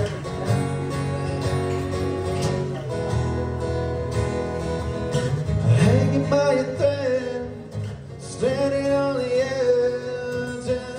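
Acoustic guitar strummed, with a man's voice singing over it from about six seconds in.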